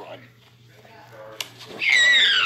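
A short quiet stretch with a faint steady hum and one click, then near the end a high-pitched voice starts a loud wailing cry that sweeps up and down in pitch.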